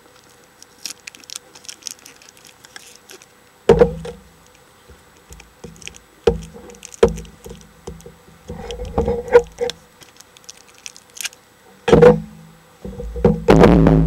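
Small plastic toys and their packaging being handled up close: scattered clicks, rustles and sharp knocks as taped-on pieces are worked loose, with the loudest knocks about four and twelve seconds in and a longer stretch of rubbing and bumping near the end.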